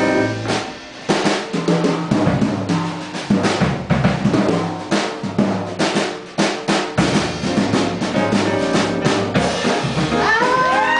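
Jazz drum kit taking a solo break in a live band: busy snare, rimshot and bass drum hits, with a low bass line beneath. The playing thins out briefly, then picks up again about a second in.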